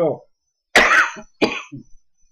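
A man coughing twice, the first cough the louder.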